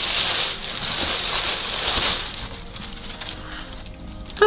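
Paper packaging crinkling and rustling as a pair of trainers is unwrapped and taken out by hand, loud for about two seconds and then softer crackling.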